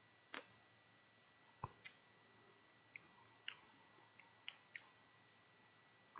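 Near silence broken by about eight faint, short clicks at irregular spacing: the lips and mouth smacking while puffing on a cigar.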